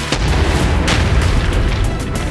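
A sudden deep boom just after the start, its low rumble carrying on under background music, with a sharper crack about a second in.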